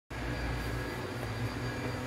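A steady low hum with a faint high-pitched whine over a hiss.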